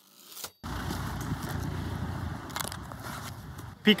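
Near silence for about half a second, then steady roadside street noise: a low rumble of traffic with faint crackling from the handheld microphone.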